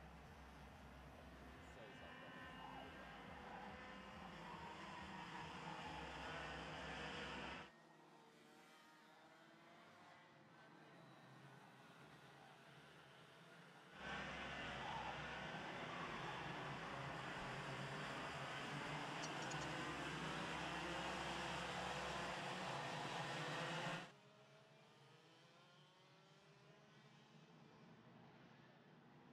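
Pack of IAME X30 125cc two-stroke kart engines racing past, their pitch rising and falling as they accelerate and brake. The sound swells, drops away abruptly about 8 seconds in, returns loud about halfway through, then falls away sharply again near the end.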